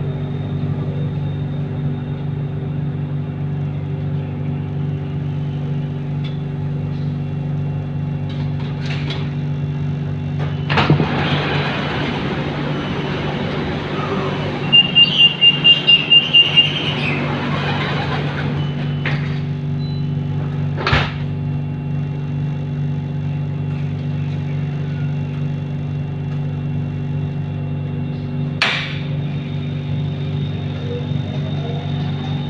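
Siemens Modular Metro train standing in a station with its equipment humming steadily. About a third of the way in, a stretch of louder rushing noise begins while the doors stand open, and a rapid string of about nine high warning beeps sounds about halfway through. The noise stops as the doors close, and two sharp knocks follow.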